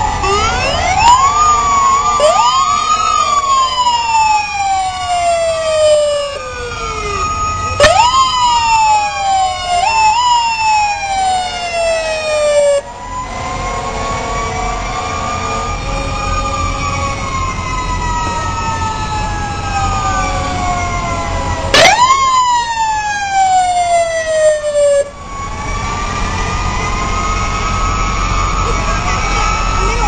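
Emergency vehicle sirens. Several times a siren winds up sharply and then slowly falls away, and in between a slower siren wail rises and falls, over a low engine rumble.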